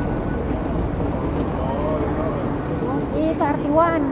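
Busy public-space ambience: a steady low rumble with background chatter, and a voice speaking clearly near the end.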